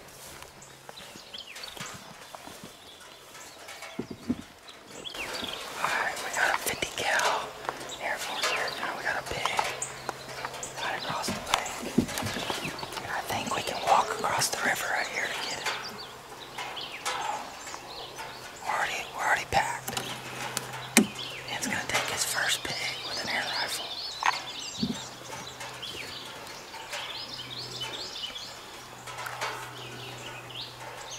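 Hushed, whispered voices coming and going, over a faint steady low hum.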